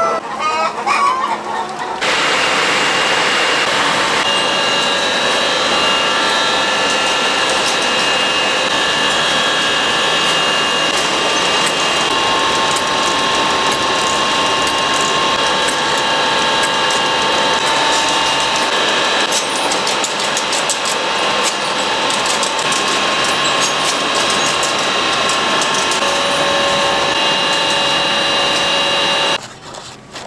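A hen clucking for the first couple of seconds, then an egg-grading machine running: a steady mechanical whine with rapid fine clicking and clattering from the conveyor, which cuts off abruptly just before the end.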